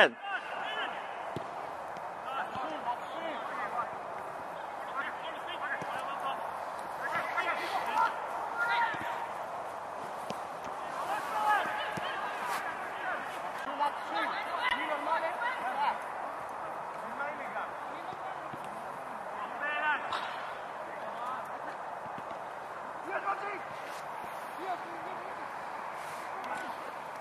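Men's voices talking indistinctly on and off, with a laugh at the start, over a steady open-air background.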